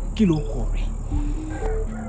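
Crickets chirring as a steady high drone, under a voice and soft background music.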